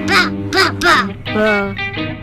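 Cartoon character's wordless vocalizing: four or five short voice sounds that slide up and down in pitch, over steady background music.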